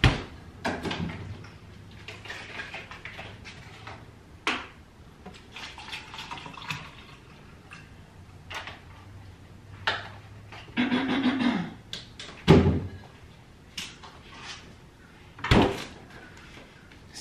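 Things being handled and set down: scattered knocks and clicks, stretches of rustling, and two louder thumps near the end.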